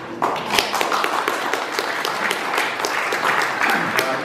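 Audience applauding, many hands clapping at once, starting about a quarter of a second in and dying away near the end.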